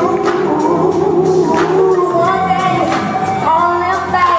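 Live band music with sung vocals holding long notes, recorded from the audience in a concert hall.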